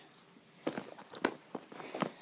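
Light handling noises from crafting with duct tape, scissors and a pen: a few short clicks and taps, with one sharper knock just past a second in.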